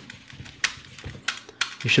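A cloth rag rubbing butter around a nonstick frying pan, giving a few irregular light clicks and scrapes.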